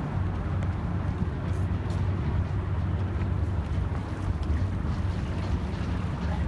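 Steady low rumble of harbourside background noise, with wind on the microphone.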